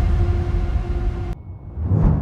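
Dark, low rumbling film underscore with steady droning tones. It drops away abruptly a little over a second in, leaving only a thin high tone, then swells back up near the end.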